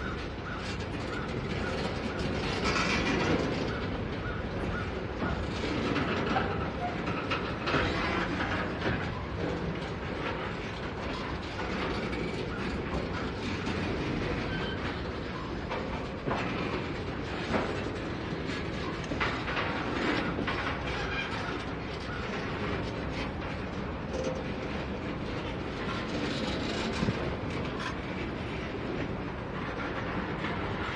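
A GREX self-unloading ballast train of hopper cars and a conveyor car rolling slowly past. The steel wheels run on the rails with scattered clicks and clanks.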